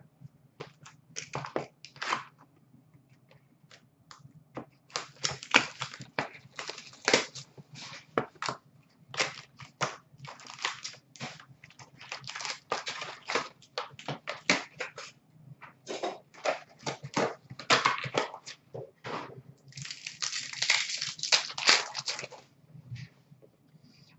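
Hockey card pack wrappers crackling and crinkling as packs are torn open and handled: a few scattered crackles at first, then a dense run of sharp crackles from about five seconds in.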